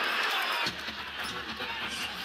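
Basketball arena ambience under a TV broadcast: a steady hiss of crowd noise that drops abruptly about two-thirds of a second in, leaving fainter court sounds and a low hum.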